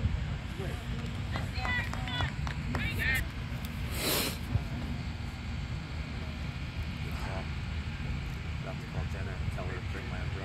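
Wind rumbling on the microphone, with a few short, high-pitched shouts from youth soccer players on the field in the first few seconds and a brief rush of noise about four seconds in.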